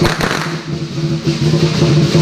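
A firecracker goes off with a sharp crack right at the start, over parade band music with drums that carries on through.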